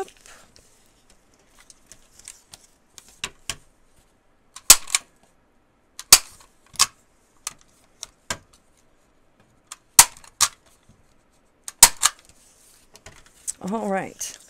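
Handheld stapler snapping shut through folded book pages: a string of sharp clacks from about a third of the way in until near the end, several coming in quick pairs. Soft paper rustling and light taps come before the first clack.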